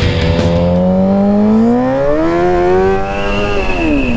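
Rock music ends within the first second. Then a sportbike engine, heard from the rider's seat, climbs smoothly in pitch for about two and a half seconds and winds down as the throttle closes, with a thin high whine joining near the end.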